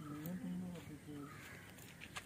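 People talking faintly, a few short phrases in the first second or so.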